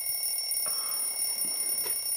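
Alarm clock ringing with a steady, high-pitched, fluttering ring.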